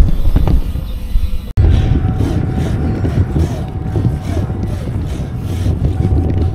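Wind buffeting the microphone and road noise from a bicycle riding along a highway shoulder, broken by a sudden short gap about a second and a half in.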